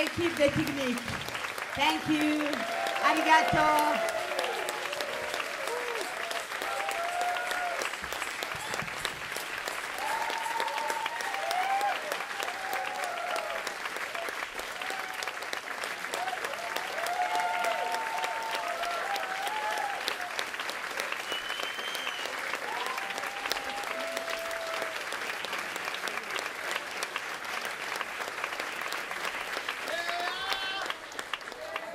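Concert audience applauding, with voices shouting and calling out over the clapping; loudest in the first few seconds, then a steady ovation.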